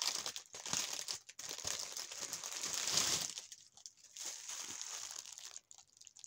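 Clear plastic packaging crinkling as a pet-grooming glove sealed inside it is handled. The crinkling is densest and loudest for about the first three seconds, then thins to lighter rustling.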